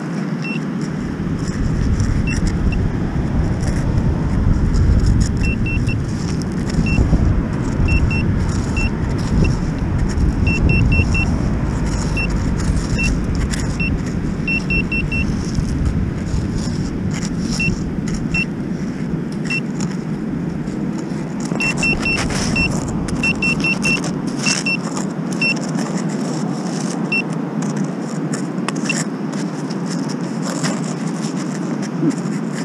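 Handheld metal-detector pinpointer beeping in short high beeps, singly and in quick runs of two to four, as it is probed into a hole in sandy beach gravel. Stones click and scrape under a gloved hand over a steady low rumble that eases about two-thirds of the way through.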